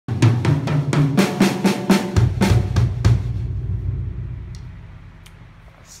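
Acoustic drum kit played in a quick run of strokes for about three seconds, then the drums ring on and fade away.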